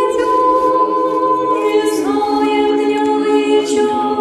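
Choir singing Orthodox church chant a cappella in slow, sustained chords, moving to a lower chord about two seconds in.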